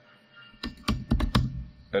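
Computer keyboard keys being typed: a quick run of about six keystrokes starting about half a second in and lasting under a second.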